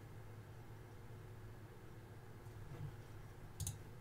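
A single sharp mouse click near the end, over a faint steady low hum.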